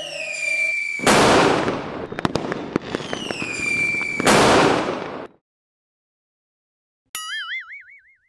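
Firework sound effects: twice a rocket whistles, falling in pitch, then bursts with a loud bang and crackling. After a short silence, near the end, comes a brief wobbling boing-like tone.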